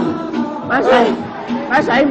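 Men's voices calling out over background music, without clear words.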